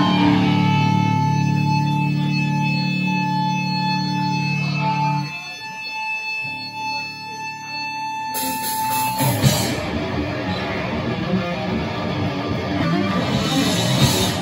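Live heavy-metal band: electric guitar and bass guitar through amplifiers hold long sustained notes for about five seconds, then, after a short drop, the full band comes in loud and dense about nine seconds in.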